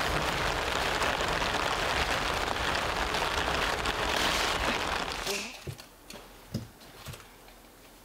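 Heavy rain pouring down in a steady, dense hiss, which cuts off suddenly about five seconds in. A quiet room follows, with a few soft knocks and clicks.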